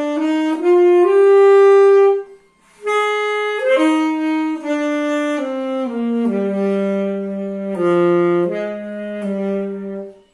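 Solo saxophone played by a student, unaccompanied: a slow melody of held notes. There is a short breath pause a little over two seconds in, and the melody steps down to lower sustained notes in the second half.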